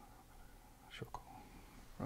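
Very quiet: faint hiss with two short, sharp clicks close together about a second in.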